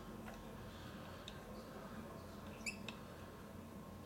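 Faint, sparse metallic clicks and a small clink of steel Allen keys against each other and the stainless lock body while a grub screw is being turned, over quiet room tone.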